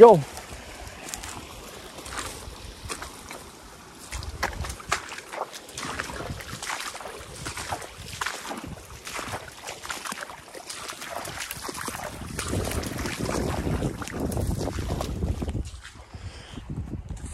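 Irregular splashing, sloshing and rustling of someone moving through shallow water and mud, with wind buffeting the microphone, heaviest near the end.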